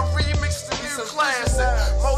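Hip hop track: a male rapper over a beat with deep bass notes. The bass drops out for about a second in the middle, then returns.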